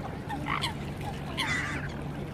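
A flock of waterbirds calling on the water: a few short calls about half a second in, and a cluster of them near the end.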